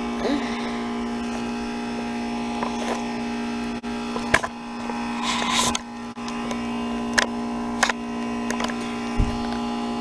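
2004 Comfort Range two-ton heat pump outdoor unit humming steadily in its defrost cycle, the compressor running while the unit steams off its ice. A few sharp ticks are scattered through, and a short rustling burst comes about five to six seconds in.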